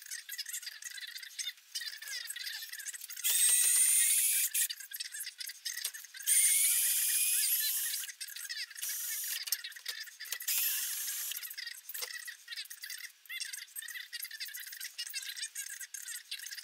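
Handheld power tool, likely a cordless drill-driver or impact driver, driving a fastener on a car's front coil-spring strut. It runs in three bursts with a rising whine, the middle one the longest. Light metallic clicks and rattles come between the bursts.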